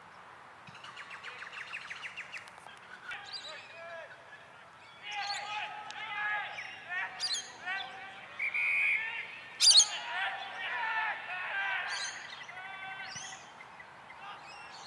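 Birds chirping and calling, a fast rattling trill early on and then many short rising-and-falling calls, with distant voices mixed in and one sharp crack about two-thirds of the way through.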